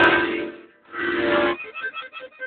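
Accordion sounding two held chords: the first fades out about half a second in, the second starts just under a second in and stops at about a second and a half.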